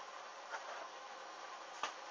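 Small flames burning along the edges of a hanging lace bra: a steady faint hiss with two sharp crackles, a small one about half a second in and a louder one near the end.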